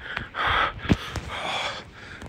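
A man breathing hard through the mouth, about three loud, breathy gasps, out of breath from walking fast. A few light knocks fall between the breaths.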